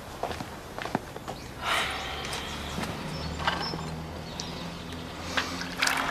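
Quiet footsteps on a floor with a few light knocks, and a brief rustle about two seconds in.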